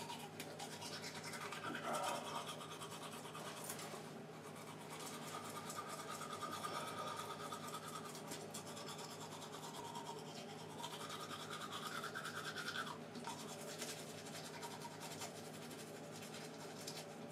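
Close, continuous scrubbing and rubbing, with a brighter buzzy tone in two stretches of a few seconds each, over a steady low hum.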